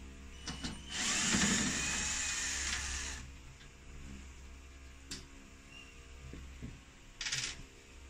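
Cordless drill-driver running for about two seconds as it backs a screw out of the gas fan heater's metal casing, followed by a few light clicks and a short burst of noise near the end.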